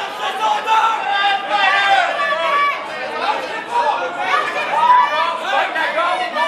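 Many voices shouting over one another without a break: spectators yelling at a live amateur MMA fight.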